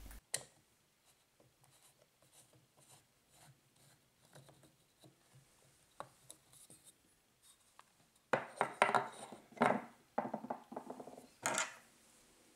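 Screwdriver turning out small screws from a wooden cover: faint clicks and scratches, then a few seconds of louder scraping and rubbing of wood as the cover is worked free, in the last third.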